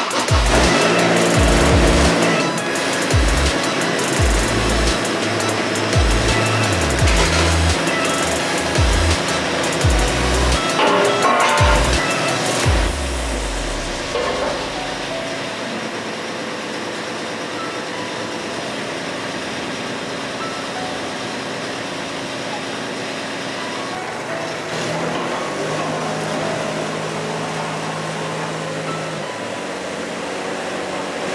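Background music with heavy bass runs for the first dozen seconds and fades out. Under it and after it, a mini excavator's diesel engine runs steadily while the arm and bucket are worked. A steady lower note joins in for a few seconds near the end.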